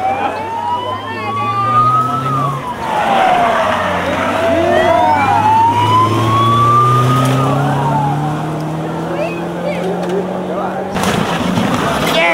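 Siren of a rally course car wailing, each cycle rising slowly in pitch and falling faster, over the car's engine as it drives through a hairpin. The siren breaks off about a second before the end.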